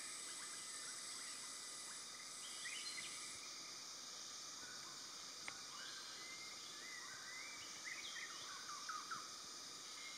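Faint forest ambience: a steady hiss of insects with a few short, rising bird chirps, about three seconds in and again near the end.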